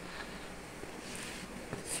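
A cloth rubbing over a white leather bar-stool seat, faint and steady.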